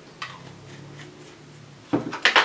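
A single light tap on the tabletop as a small hand tool is set down, over faint room hum, with a sharper knock right at the end.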